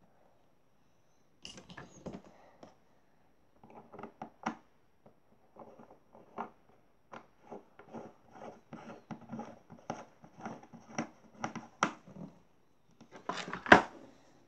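Small clicks and scrapes from hands handling a small plastic poster paint jar on a wooden table, a few a second, with a louder clatter near the end.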